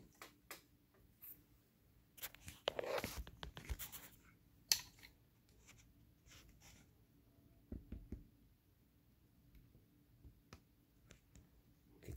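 Quiet handling noises: scattered light clicks, taps and short scratchy rustles, the sharpest click a little before the fifth second.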